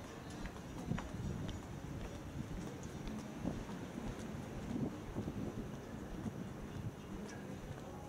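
Footsteps on a wooden boardwalk at walking pace, short irregular knocks over a steady low background hiss.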